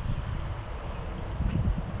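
Wind buffeting the microphone: a low, uneven rumble.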